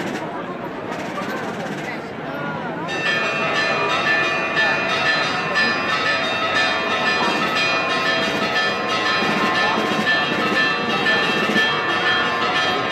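Church bells begin pealing suddenly about three seconds in, struck over and over in quick succession, over the chatter of a large outdoor crowd.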